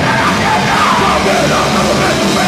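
Punk band playing live: distorted electric guitars, bass and drum kit at full volume, with a shouted lead vocal over them.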